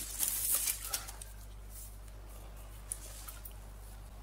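Plastic wrapping being torn and crinkled off a new water-purifier filter cartridge during about the first second. After that there is only a faint steady low hum, with one small click about three seconds in.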